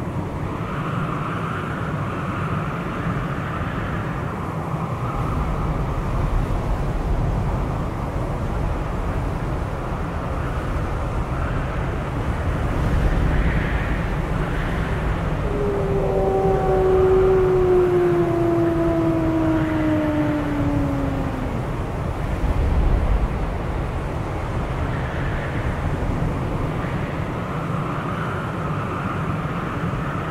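Blizzard wind blowing steadily with a deep rumble. About halfway through, a wolf gives one long howl that slides slowly down in pitch over about six seconds.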